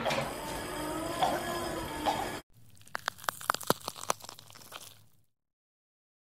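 Dense, noisy film soundtrack that cuts off abruptly about two seconds in, followed by a softer run of sharp crackling clicks that fades away, then dead silence.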